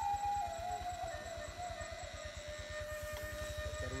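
Motorcycle engine running with a fast, even low pulsing, under a single whining tone that slowly drops in pitch.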